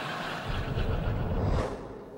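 Sitcom studio audience laughing, a steady noisy wash with no words. It swells about half a second in and fades away shortly before the end.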